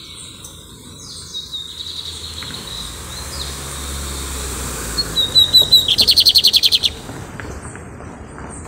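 Male lined seedeater (bigodinho) singing: thin high notes at first, then a few sharp notes about five seconds in that run into a fast metallic trill of about a dozen notes in under a second, the loudest part.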